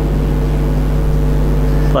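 A steady low hum with a hiss over it, with no words spoken.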